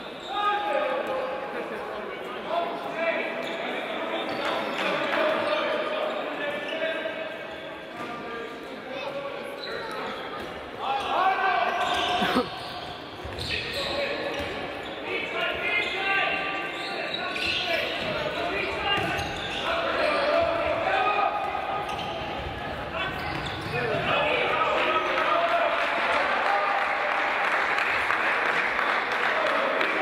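A handball bouncing and being dribbled on a wooden sports-hall floor, with players' and spectators' voices throughout, all echoing in a large hall.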